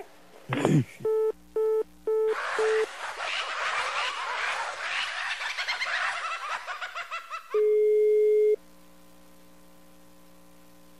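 Telephone line tones: four short beeps of a busy signal after the other end hangs up, then a few seconds of laughter, then one long ringback tone of about a second as the number is dialled again. A low steady line hum follows.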